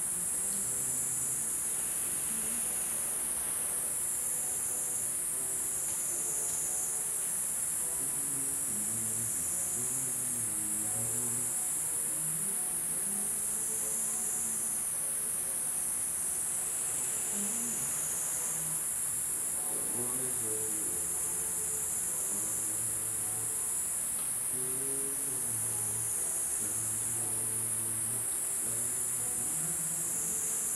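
Steady high-pitched insect chorus that swells and dips every couple of seconds, with faint music underneath.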